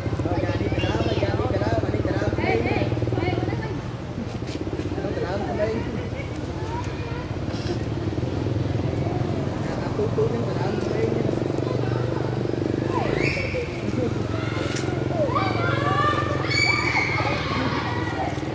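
Indistinct voices over a steady low engine hum, with louder, higher-pitched voice calls a little after halfway through.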